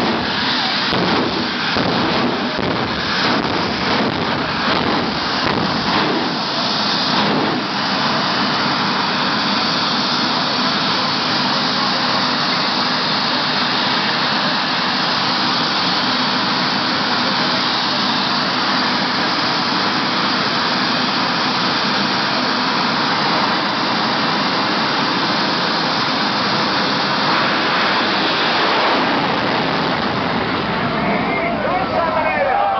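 Jet dragster's turbine engine running loud and steady, with crackling for the first several seconds.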